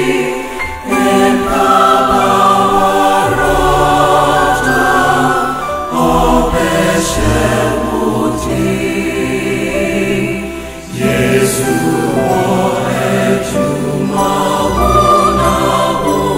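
A choir singing a hymn in Twi, several voice parts together in sustained phrases, with short pauses between phrases about one, six and eleven seconds in.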